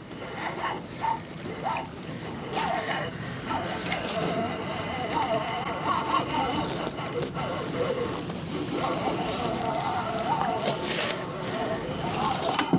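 Fishing reel being cranked steadily as a hooked sockeye salmon is reeled in, with a wavering whir and a few scattered clicks.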